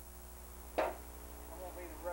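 A single short, sharp smack about a second in, typical of a body hitting the mat in backyard wrestling, followed by faint distant voices, over a steady low electrical hum.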